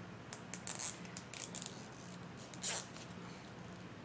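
Burlap ribbon rustling and crinkling in the hands as a bow is pinched and shaped: a quick run of short crinkles in the first two seconds, then one louder crinkle a little past halfway.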